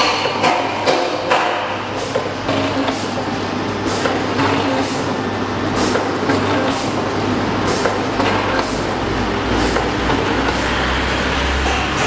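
Vertical packaging machines running in a workshop: a steady mechanical hum with frequent irregular clicks and knocks. A low rumble comes up over the last few seconds.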